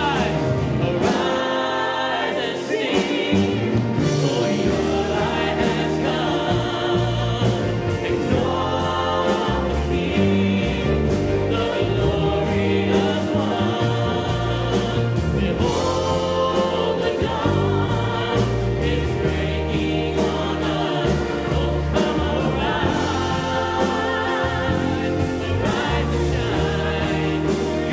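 Live worship music: a male voice singing a hymn with acoustic guitar, strings and piano, many voices joining in, over a steady beat.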